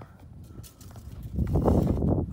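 Close-up handling noise: a low, irregular scuffing rumble right at the microphone starts about halfway through, after a few faint knocks.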